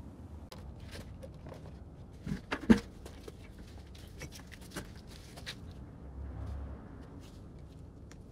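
Scattered light clicks and knocks of handling work around a brake caliper, with one sharper knock a little under three seconds in.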